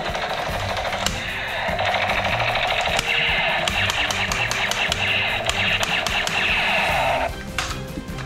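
Electronic sound effect from a battery-powered toy gun, a dense rapid-fire sound that gets louder about a second in and stops abruptly near the end. Background music plays underneath throughout.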